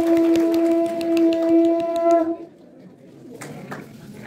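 Conch shell (shankha) blown in one long, steady note that stops abruptly a little over two seconds in, followed by quieter room noise.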